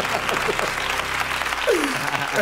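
Studio audience applauding after a joke, with laughter in the room and a short vocal sound near the end.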